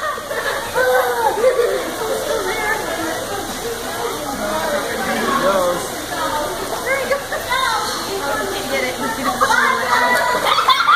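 Overlapping chatter of children and adults, with a steady rush of water from the touch tank underneath.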